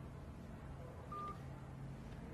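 A single short electronic beep from a smartphone about a second in, over quiet room tone with a faint steady low hum.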